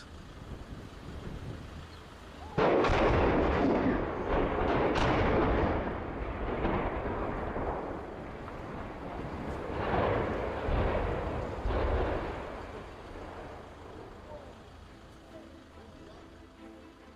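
Explosive demolition of steel dockyard cranes: a sudden blast about two and a half seconds in, then a long rumble as the cranes come down, with further bangs around ten and twelve seconds, fading near the end.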